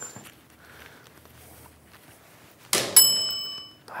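A knock about three seconds in, followed at once by a bright metallic ding that rings for under a second. It is the tossed magnetic work light striking and sticking to a steel cabinet.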